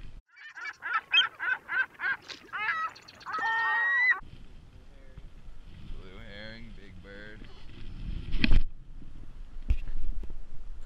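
A bird calling: a rapid series of about eight loud calls, then a longer held call, cutting off abruptly about four seconds in. Wind and water noise follow, with a sharp thump near the end.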